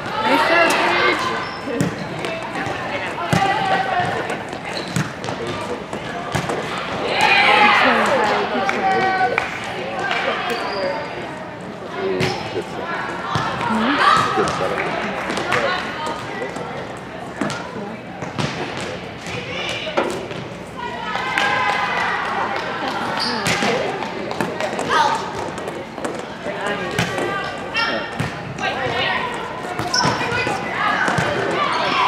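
Volleyball being played in a large gym: girls' voices calling and shouting on and off, over repeated sharp thuds of the ball being hit and striking the court.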